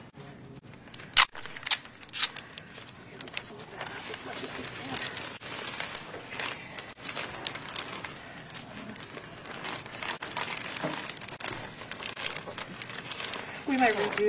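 Clear plastic sheeting crinkling and crackling as it is handled and folded around a box, with three sharp crackles close together about a second in.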